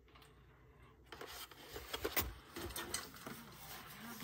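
Cardboard sticker packs being handled and laid down on a table: faint, irregular rustling and light taps, starting about a second in, with one sharper tap a little past two seconds.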